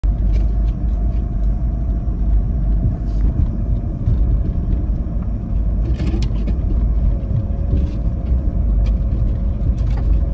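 A vehicle driving along a rough sandy dirt trail, heard from inside the cab: a loud, steady low rumble of engine and tyres, with scattered short clicks and knocks throughout. A faint steady whine comes in about seven seconds in.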